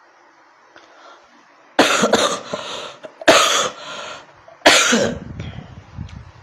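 A man coughing three times, loudly, about a second and a half apart.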